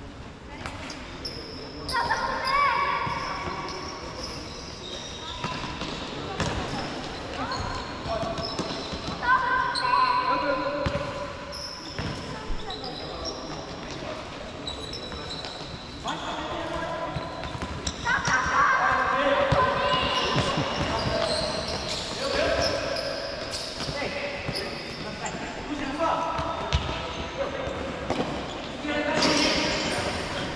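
Futsal game on an indoor court: players shouting and calling to each other, with the ball thudding off feet and bouncing on the hard floor, echoing around a large sports hall.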